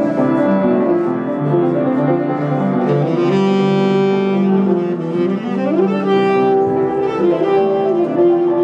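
Saxophone and upright piano playing together live, the saxophone holding long notes over the piano, with a rising slide a little past the middle.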